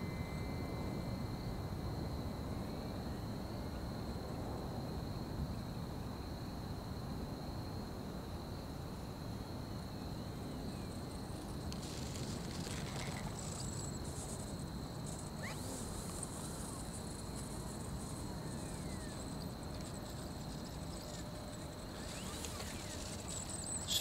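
Outdoor ambience: insects chirring in one steady high-pitched tone, over a low even background hiss.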